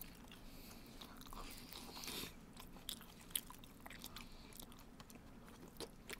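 Faint chewing, with scattered small clicks and taps of wooden chopsticks picking at food in plastic lunch-box trays. A sharper click comes a little past three seconds in.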